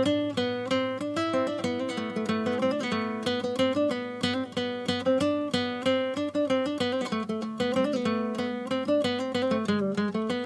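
Instrumental music on a plucked acoustic guitar, a quick, even run of notes with no singing.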